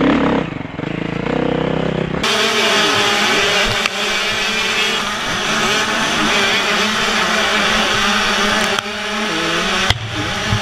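A dirt bike engine running at low revs. About two seconds in, a sudden cut to a tight pack of motocross bikes racing together, many engines revving up and down at once.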